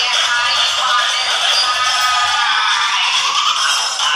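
Dance music with a singing voice, played back thin with almost no bass.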